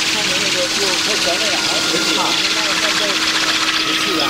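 A small engine or motor running steadily, with a faint high whine slowly falling in pitch, under indistinct voices talking.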